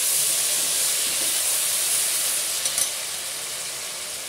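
Ginger-garlic paste and browned onions frying in hot oil in a pressure cooker pot, a steady loud sizzle while being stirred with a metal spoon. The sizzle eases slightly in the second half.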